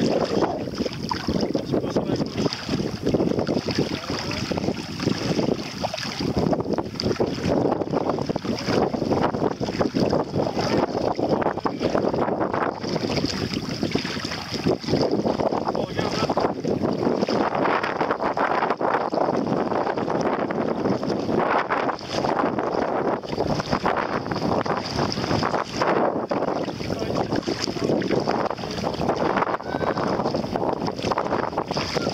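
Bare feet wading and splashing through shallow water, a continuous irregular sloshing, with wind buffeting the microphone.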